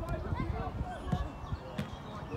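Outdoor youth football: faint shouts from players and touchline spectators, with a couple of short dull thuds of the ball being kicked.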